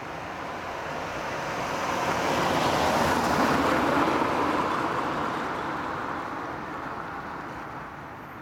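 A car driving past close by: tyre and engine noise swells to a peak about three to four seconds in and fades as it moves off down the road.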